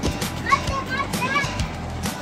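A young girl's high-pitched voice giving a few short squeals and calls about half a second in, over background music with a steady beat.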